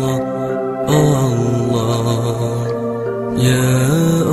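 Slow Islamic devotional chant (zikir) over a music backing, sung in long held notes that move to a new pitch about a second in and again after about three seconds.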